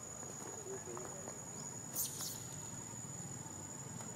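Steady high-pitched insect drone. Faint low wavering calls sound in the first second or so, and a short hissing burst about two seconds in is the loudest moment.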